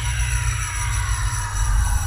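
Logo-intro sound effect: a deep steady rumble under a cluster of high tones that glide slowly downward together, with a bright high hiss swelling near the end.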